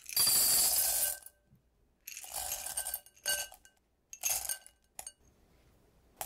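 Dark and white couverture chocolate callets poured into a glass bowl, the hard little pieces rattling against the glass and each other. One long pour lasts about a second, followed by shorter pours around two, three and four seconds in.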